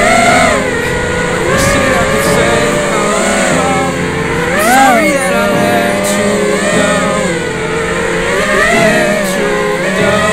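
Brushless motors of an FPV quadcopter (Emax 2205) whining in flight, their pitch rising and falling in smooth swoops as the throttle changes, over background music.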